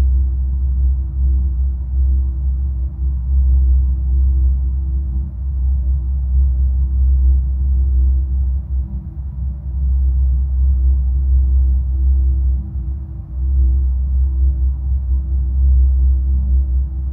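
Steady low ambient drone with a thin sustained tone above it: a binaural-beat backing track, dipping briefly twice in the second half.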